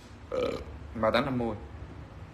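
A man's voice making two short vocal sounds, about half a second and a second in: brief mumbled utterances or hesitation noises rather than clear words.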